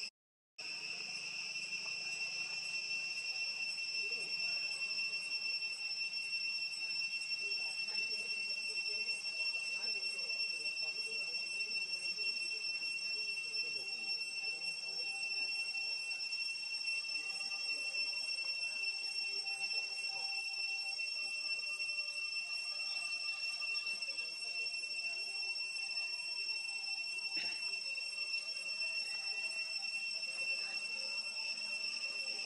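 A steady, high-pitched insect drone holding two even pitches, one above the other, without a break; the sound cuts out for about half a second right at the start.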